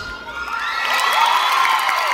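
The dance music stops and an audience breaks into cheering, with many high-pitched screams and whoops, swelling about half a second in.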